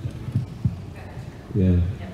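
A few soft, dull low thumps, and a man saying one short word near the end.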